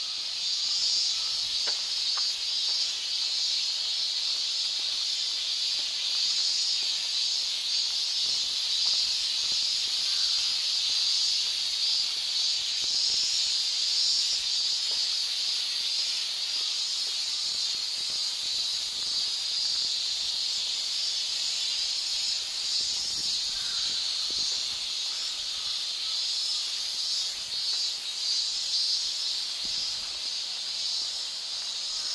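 Cicadas singing in a dense, steady chorus: one continuous buzz, with a higher buzz above it that comes and goes.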